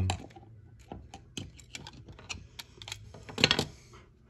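Irregular small plastic and metal clicks and rattles from handling a new rocker (decora) light switch as it is worked free of its wall plate, with a louder cluster of clicks about three and a half seconds in.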